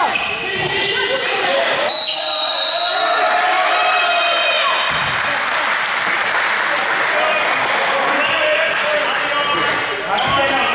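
Basketball game sounds in a gym: a ball bouncing on the hardwood and players and coaches calling out, with a referee's whistle blown once for about a second, about two seconds in.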